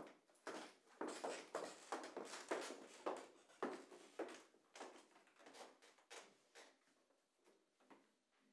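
Footsteps on a wooden floor in a small, echoing room, about two to three steps a second, as the performers walk into place, growing fainter in the second half as the pianist settles at the grand piano.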